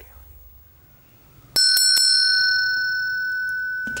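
A small bell struck three times in quick succession about one and a half seconds in, then a long high ringing that slowly fades.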